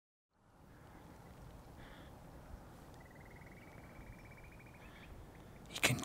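Faint outdoor ambience by the shore, fading in, with distant bird calls: a short call about two seconds in and a faint trill that rises slightly in pitch for nearly two seconds around the middle.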